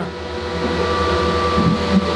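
Steady whirring hum of a GPU mining rig's cooling fans running, with a faint steady whine over it.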